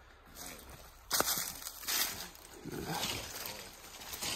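Leafy branches rustling and scraping past as someone pushes through dense brush on foot, with a sharp click, like a twig snapping, about a second in.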